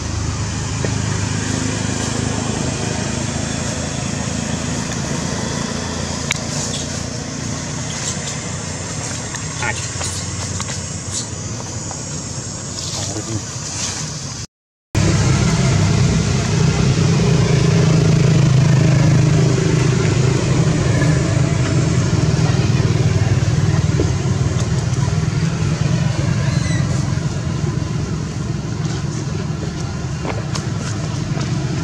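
Steady low rumble of road traffic with indistinct voices in it. It cuts out for a moment near the middle and comes back louder.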